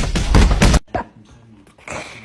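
A loud, harsh animal noise lasting about a second that cuts off suddenly, followed by quieter scuffling.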